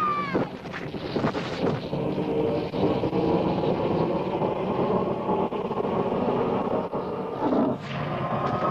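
Continuous rumble of a stampeding wildebeest herd, massed hooves pounding without a break, with a brief louder swell near the end.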